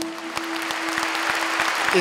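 Audience applauding, the clapping building, while the last held note of the band's piece fades away.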